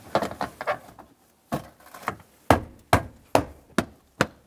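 Carpeted trunk trim cover being lined up and pressed into place by hand: light rattling at first, then about five sharp knocks roughly half a second apart as the panel seats.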